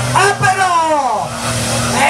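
A pickup truck's engine running steadily under load as it pulls a tractor-pulling sled, mixed with a man's raised voice over a loudspeaker.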